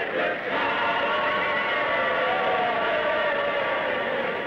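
A choir singing, drawing out one long held note that bends up near the middle and sinks toward the end.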